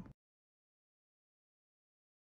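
Dead silence: the sound track cuts to nothing just after the last syllable of a spoken word at the very start.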